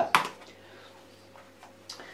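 Plastic lid of an icing-sugar shaker jar being worked open by hand: one sharp click just after the start, then a few faint small clicks.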